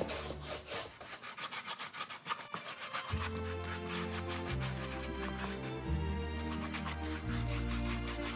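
Paintbrush scrubbing chalk paint onto a styrofoam block in quick back-and-forth strokes, several a second, over background music.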